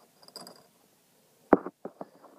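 Handling noise of fingers working at a throttle cable and linkage: a few soft rustles and clicks, then a sharp click about one and a half seconds in and a smaller one just after.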